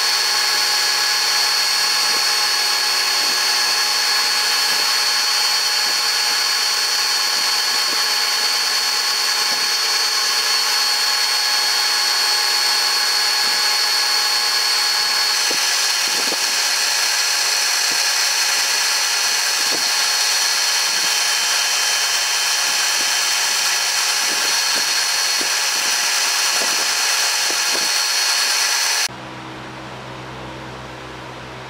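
Lodge & Shipley engine lathe running with a boring bar cutting dry into the cast iron hub of a flat belt pulley: a steady machining noise with high steady whining tones and scattered ticks, more frequent later on, as the tool works through the rough, interrupted bore of the casting. The machining sound cuts off suddenly about a second before the end, leaving a quieter steady hum.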